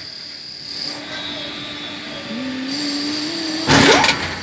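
Construction hoist machinery running with a steady high whine that drops out about a second in and returns, while a lower tone rises slowly. A loud brief rush of noise comes near the end.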